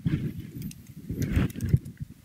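Laptop keyboard keys clicking as a short terminal command is typed, over a low room rumble.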